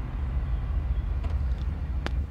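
Road and engine noise heard inside the cabin of a moving vehicle: a steady low rumble.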